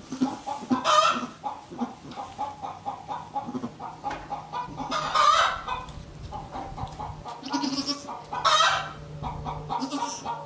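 Chickens clucking in a steady run of short calls, with louder squawks about a second in, near the middle and again a little before the end.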